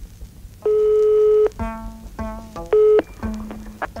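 Telephone line tones: a steady tone for nearly a second, then a quick run of short beeps of changing pitch as a number is dialled, and another brief steady tone near the end.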